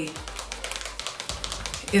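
Tint brush clicking and scraping against a mixing bowl as hair color is stirred: a quick, irregular run of small taps.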